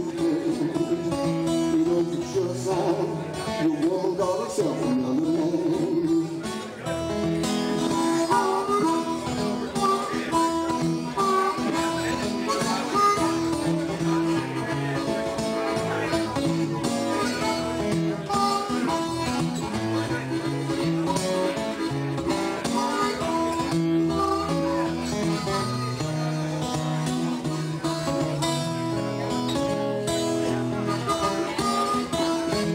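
Live acoustic blues: an acoustic guitar picks a steady accompaniment while a harmonica plays an instrumental solo. The harmonica line wavers in pitch for the first few seconds, then holds longer notes.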